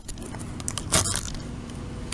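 A leather handbag being handled as a mirror is packed into it: small clicks and clinks from the bag's metal hardware, with one louder rustle about a second in.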